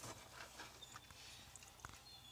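Near silence: faint room tone with a low steady hum and a single small click near the end.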